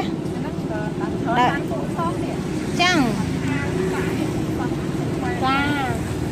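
Short bursts of people talking, a few seconds apart, over a steady low mechanical hum.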